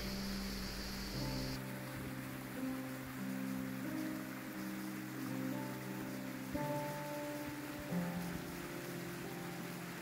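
Slow instrumental background music of long held notes, the chords changing every second or so.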